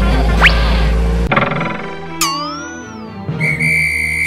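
Background music with cartoon sound effects: a quick rising whistle about half a second in, a wavering, swooping whistle tone around two seconds in, then a steady high whistle blast near the end.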